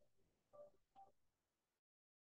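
Near silence, with two faint, short pitched blips about half a second and one second in; the sound cuts to dead silence near the end.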